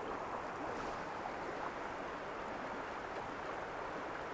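A shallow, rocky creek rushing steadily over a riffle: an even, unbroken rush of flowing water.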